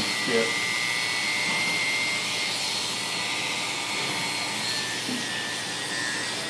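Oster electric barber hair clipper running steadily, a continuous motor hum with a thin high whine.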